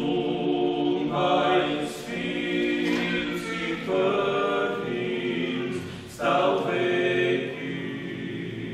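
Small male vocal ensemble of six singing a Christmas carol a cappella in close harmony: held chords phrase by phrase, with short breaths between phrases about one, four and six seconds in.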